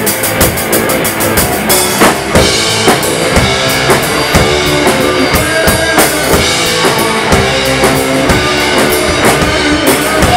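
Live rock band playing an instrumental passage: electric guitar, bass guitar and drum kit, with the drums to the fore and the kick and snare hitting at a steady beat.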